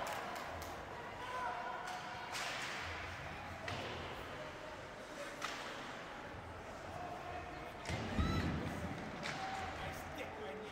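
Ice hockey rink sound: scattered crowd chatter, with several sharp clacks of sticks and puck on the ice and boards. A heavier thud about eight seconds in is the loudest sound.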